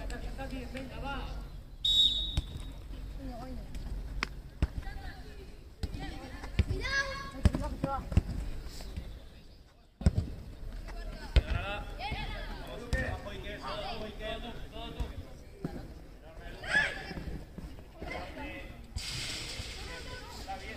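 Outdoor youth football match: players and spectators calling out, the ball thudding off boots several times, and a short high whistle blast about two seconds in, the referee's signal to restart play from the centre spot.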